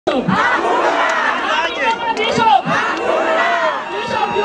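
A crowd of many voices shouting at once, loud and continuous.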